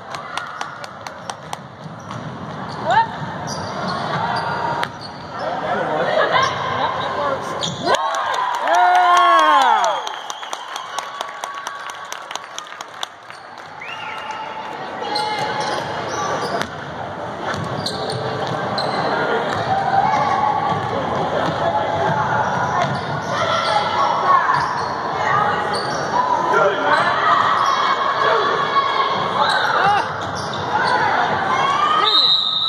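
Basketball dribbled on a hardwood gym floor, echoing in the hall, under spectators' voices and shouts. A long call rises and falls in pitch about eight seconds in, and the chatter grows louder over the second half.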